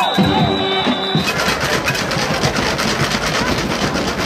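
Football stadium game ambience: crowd noise mixed with music. A steady high whistle blast, typical of a referee blowing a play dead, lasts about the first second. The sound then changes abruptly to a denser, even crowd noise.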